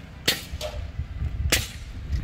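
Two sharp cracks of nailing into the porch roof trim of a house under construction, about a second and a quarter apart.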